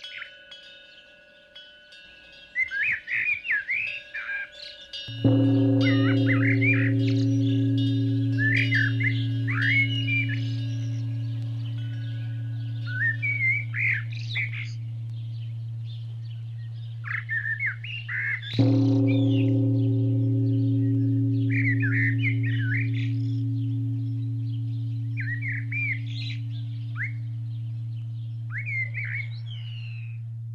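Small birds chirping in short bursts throughout, while a deep temple bell is struck twice, about five seconds in and again near nineteen seconds. Each strike leaves a low, steady hum that fades slowly over many seconds.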